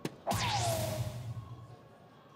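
A dart hits a soft-tip electronic dartboard with a sharp click. The machine answers about a third of a second later with an electronic hit sound effect: a whoosh with a tone gliding down in pitch, fading away over about a second.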